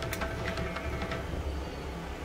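Paruppu vadai (lentil fritters) deep-frying in hot oil in an iron kadai: steady sizzling and bubbling with scattered crackles.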